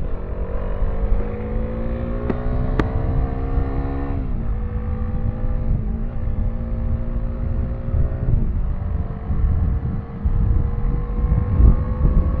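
Kawasaki Dominar 400's single-cylinder engine accelerating, its pitch climbing and then dropping suddenly about four and eight and a half seconds in as it shifts up through the gears. Steady wind rumbles on the microphone, and there are two sharp ticks between two and three seconds in.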